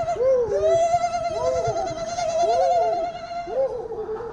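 Men whooping and hooting: one voice holds a long, wavering high "ooo" for about three and a half seconds while another gives a run of short rising-and-falling "ooh" hoots.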